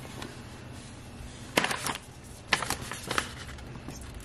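Plastic snack pouch being handled and opened, with a few sharp crinkles of the packaging around the middle, over a faint low steady hum.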